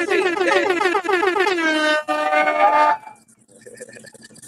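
Air-horn sound effect: a loud, held blare that wavers for about two seconds, then steadies and cuts off suddenly about three seconds in.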